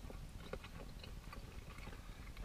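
Faint chewing and mouth sounds of people eating a pastry-crust chicken pie, with scattered soft clicks and smacks over a low cabin hum.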